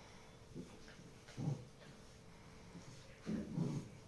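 Tibetan mastiffs play-fighting, giving low growls: a short one about a second and a half in and a longer, louder one near the end.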